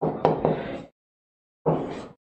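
Chalk on a blackboard as letters are written: sharp taps and short scrapes in two brief stretches, with a silent gap of under a second between them.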